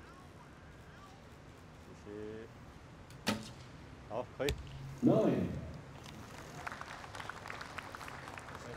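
A recurve bow being shot: sharp snaps a little after three seconds and again about four and a half seconds in, the last being the string release. A short, louder voice sound follows at about five seconds.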